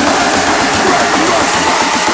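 A beatless stretch of a hardstyle track: a voice-like sound wavering up and down in pitch over a low steady drone, with no kick drum.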